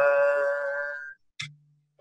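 A man singing unaccompanied holds one note of a Hebrew liturgical song for about a second, then stops. A short hiss follows, then a pause before the next phrase.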